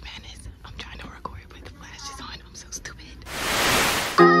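Faint whispering for about three seconds, then a loud hiss of TV-static noise starts near the end as a transition effect.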